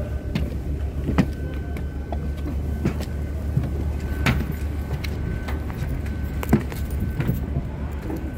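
Footsteps on steel diamond-plate stairs: sharp, irregular metallic knocks over a steady low rumble.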